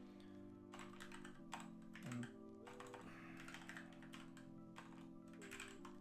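Computer keyboard typing: quiet, irregular keystroke clicks in short runs, over soft chillhop background music with held chords.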